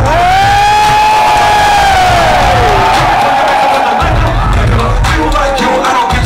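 Loud live hip-hop show: the beat's bass drops out while one long held vocal shout rises, holds and falls away, over a cheering crowd. The heavy bass comes back in about four seconds in.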